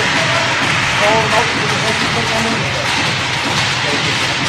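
Sound of a youth ice hockey game in an indoor rink: a loud, steady wash of noise with voices calling out over it.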